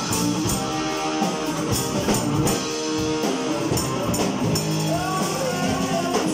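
Live rock band jamming: electric bass, electric guitar and a drum kit playing a steady beat, with a woman's voice singing through a microphone near the end.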